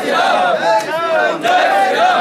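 A crowd of male Hanuman devotees chanting and shouting together, many voices overlapping.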